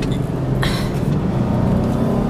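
Car cabin noise while driving: a steady low engine and road hum, with one brief hiss about two-thirds of a second in.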